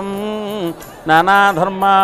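A voice chanting a devotional song in long held notes over a fast, even ticking beat. The chant breaks off briefly in the middle and then resumes.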